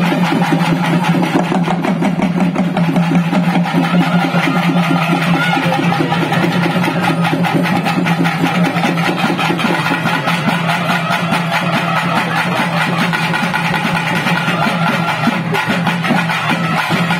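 Live folk music ensemble playing fast, even drumming over a steady, held low drone.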